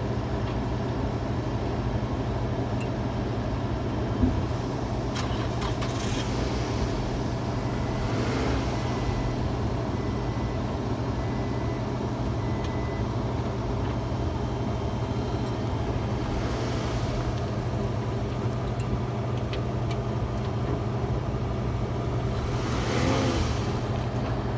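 2010 Scion tC's four-cylinder engine idling steadily, a constant low hum.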